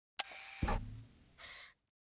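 Short electronic intro sound effect: a sharp click, then a low boom about half a second in with high tones gliding upward over it, fading out just before the title card appears.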